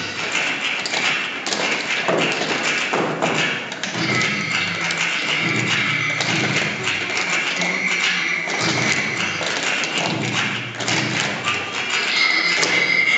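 Tap shoes striking a wooden stage floor as several dancers tap together: a dense, quick run of clicks and thuds.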